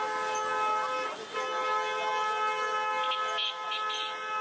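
A vehicle horn sounding a long, steady held note, broken off briefly about a second in and then held again.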